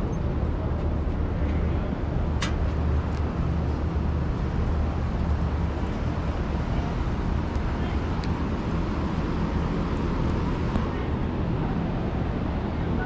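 Steady low mechanical hum under outdoor background noise, with a single sharp click about two and a half seconds in.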